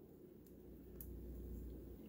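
Small scissors snipping the leathery shell of a ball python egg: two faint clicks, about half a second and a second in, over a low steady hum.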